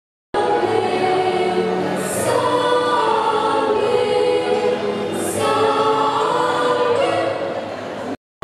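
A choir singing a slow hymn, the voices holding long notes.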